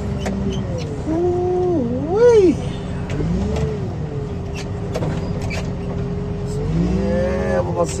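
A heavy machine's engine running steadily while its hydraulics lift and carry a stripped car. The hydraulic whine swoops up and down in pitch about two seconds in, then holds steady.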